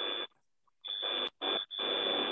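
Electronic whine over hiss from an open microphone on a video call: a steady high-pitched tone that cuts out and comes back in three stretches.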